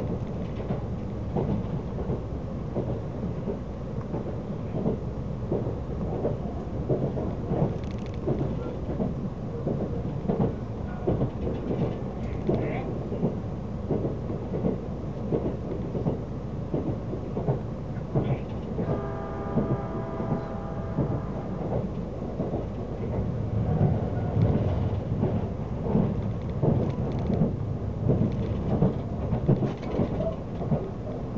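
Running noise heard inside a moving limited express train: a steady low rumble of wheels on rail with frequent irregular clicks and knocks from the track. About twenty seconds in, a pitched tone sounds for a couple of seconds.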